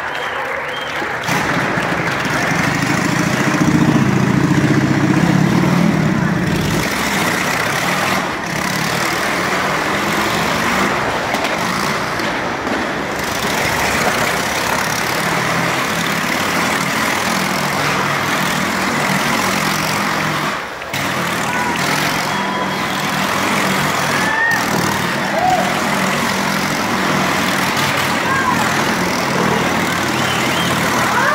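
Motorcycle engines running loudly inside a wooden Wall of Death drum, with a louder surge a few seconds in. By the end a bike is circling high on the vertical wall.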